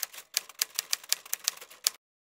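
Typewriter key strikes, a quick run of about fifteen clacks at roughly seven a second, then cut off abruptly.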